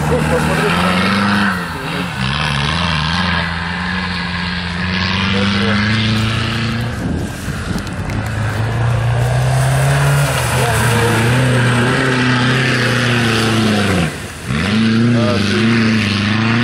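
Off-road 4x4 engine revving as it pushes through swamp reeds, its note rising and falling with the throttle throughout, dropping briefly near the end before climbing again.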